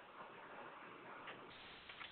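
Near silence on an open conference-call line: faint steady hiss with a few faint ticks.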